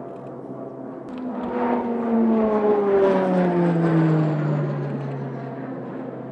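Embraer A-29 Super Tucano's PT6A turboprop engine and propeller passing by on a low pass. The sound swells to a peak about two to three seconds in, then fades, while its drone and a thin turbine whine fall steadily in pitch as the aircraft goes past.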